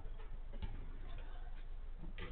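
A few irregular sharp knocks from five-a-side football play on artificial turf, a ball being kicked and players' footsteps, over a steady hiss from a low-quality camera microphone.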